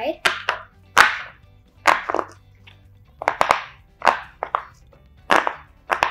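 Silicone pop-it fidget toy's firm side being pressed with the fingertips, the bubbles popping through one at a time: a dozen or so sharp clicks at an uneven pace, some in quick pairs.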